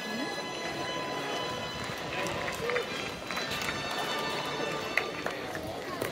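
Indistinct voice over the racecourse public-address loudspeakers, with music underneath, in open-air ambience.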